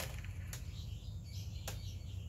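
Steady low hum with three short, light clicks, and faint high chirps in the background.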